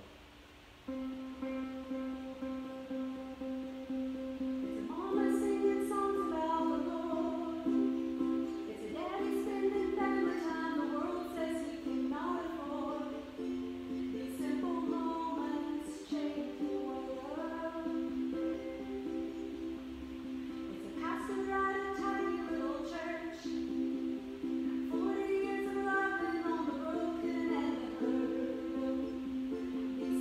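A woman singing a slow song to her own ukulele strumming. The ukulele starts about a second in, and her voice joins a few seconds later.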